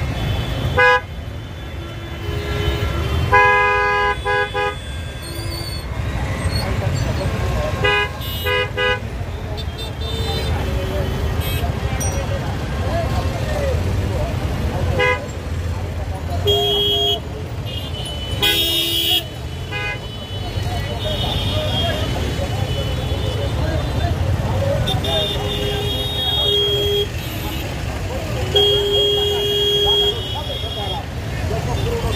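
Congested street traffic: a steady low rumble of engines with repeated vehicle horn honks, some short toots and some held for about a second, sounding every few seconds, over the chatter of a crowd.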